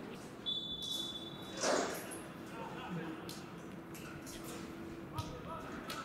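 Pitch-side sound of a football match: players shouting to one another, a short high referee's whistle blast about half a second in, and the thud of the ball being kicked near the end.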